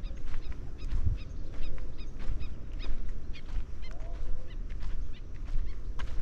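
Birds giving short, high calls over and over, several a second, over an uneven low rumble and thuds from footsteps on a dirt path.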